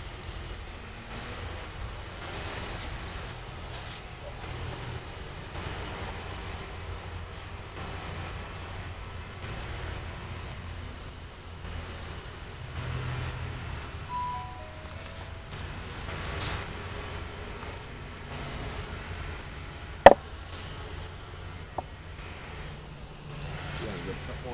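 Wooden beehive boxes and parts handled during reassembly: a low rumble of handling and wind on the microphone, with one sharp knock about twenty seconds in.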